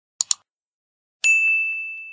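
Subscribe-button animation sound effects: a quick double mouse click, then about a second later a single bright bell ding that rings on and fades away.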